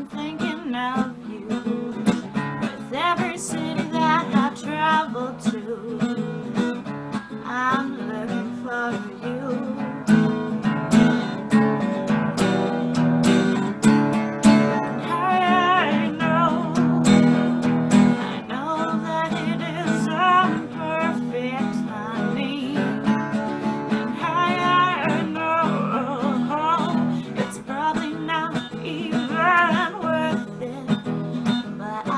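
A woman singing a slow original song to her own strummed acoustic guitar, with a wavering vibrato on held notes.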